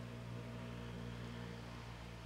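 A faint, steady low hum with light background noise.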